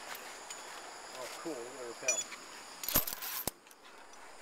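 Faint distant voices, then a cluster of sharp metallic clicks about three seconds in and a single click half a second later.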